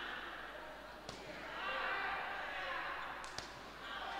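Boxing gloves landing punches: one sharp smack about a second in and a quick pair of smacks near the end, over voices shouting in a large hall.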